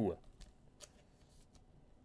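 Faint handling of a trading card and its plastic holder, with a few soft ticks and rustles as the card is slid into a clear sleeve.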